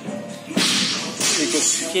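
Handling noise from a phone's microphone brushing against skin: a rough scraping hiss that starts about half a second in, with voices faintly behind it.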